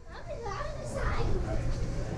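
Young children's voices: excited chatter and calls while playing, over a low steady background rumble.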